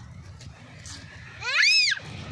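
A single loud, high-pitched call near the end that sweeps up and back down in pitch over about half a second.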